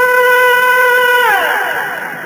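A male Quran reciter's voice in the ornamented mujawwad style, holding one long high note steady, then about a second and a half in sliding down in a descending melismatic run.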